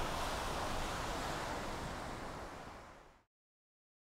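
Ocean surf washing on a beach, a steady hiss that fades out and cuts to silence about three seconds in.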